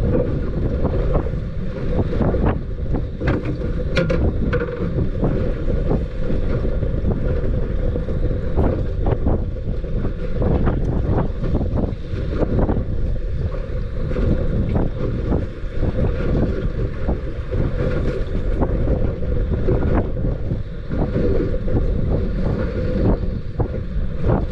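Strong wind buffeting the microphone on a small boat in choppy water, a steady deep rumble broken by irregular knocks and slaps.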